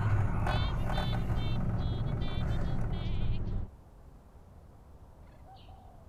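Steady low drone of a car driving, heard from inside the cabin, with a run of short, high, wavering squeaks over it. A little past halfway it cuts off sharply to quiet outdoor air with one faint short sound.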